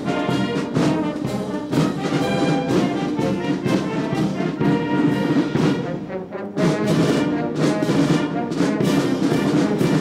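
Military band playing music on brass instruments and drums, with a regular beat and a brief lull about six seconds in.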